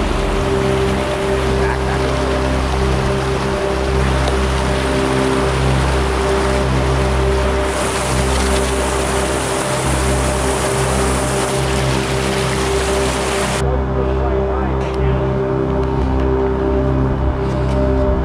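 Ambient background music with long held tones over the steady rush of a creek. The water noise cuts off suddenly about three-quarters of the way through, leaving the music.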